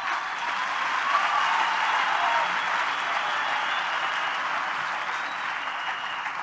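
Audience applauding, building up just after the start and tapering off near the end, with a faint voice calling out in the crowd about a second in.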